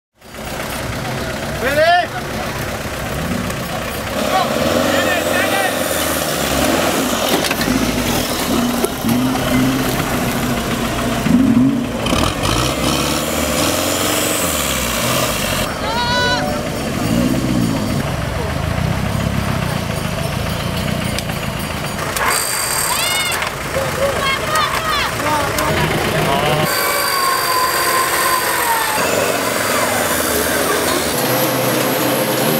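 Off-road 4x4 engines revving and labouring in mud, mixed with people shouting and calling out. The sound changes abruptly several times.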